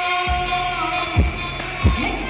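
Loud live pop music over a stage sound system. Three deep bass-drum thumps sound under a long held note, and the held note ends about halfway through.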